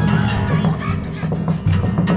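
Improvised free-jazz music: a repeating low bass figure under sharp percussive hits, with high chattering voices like children's mixed in.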